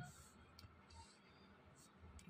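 Near silence with a few faint computer keyboard clicks as labels are typed into spreadsheet cells.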